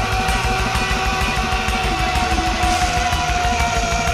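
Instrumental thrash metal: distorted electric guitar over a fast, dense low-end rhythm, with one high note held throughout.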